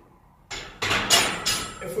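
An empty steel barbell set back onto the hooks of a Rogue power rack: a short run of metal clanks and rattles starting about half a second in, with a man's voice starting at the very end.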